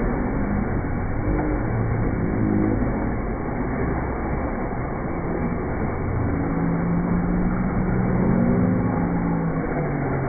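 Steady rumbling din of a busy indoor ice rink, with a low hum and faint held tones drifting slowly in pitch, and no clear single event.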